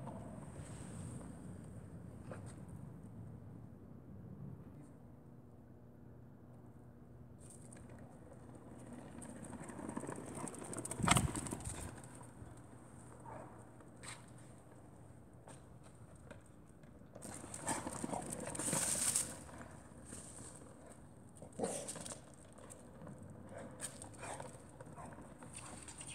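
Three-wheeled 21st Scooter kick scooter rolling over brick paving, its small wheels rumbling and knocking over the joints between the bricks. A sharp knock comes about eleven seconds in, and a longer, louder rattling stretch around eighteen seconds.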